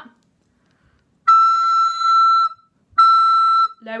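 Descant recorder sounding high E twice, first a held note of about a second, then a shorter one. The note is played an octave above low E by half-covering the back thumbhole with the thumbnail.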